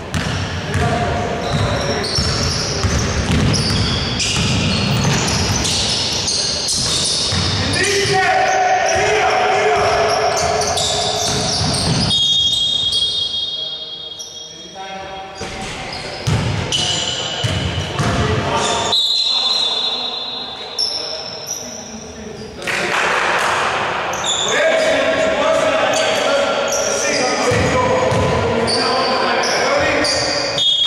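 A basketball bouncing on a hardwood gym floor, with voices echoing around a large hall, and a few short high steady tones.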